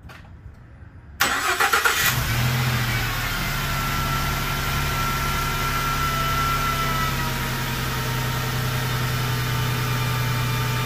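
Ford Transit van's engine cranking on the starter for about a second, catching about two seconds in and settling into a steady idle, with a faint high whine over it for a few seconds after it starts. The running engine drives the 6R80 transmission's pump, pushing the old fluid out into the drain pan for the flush.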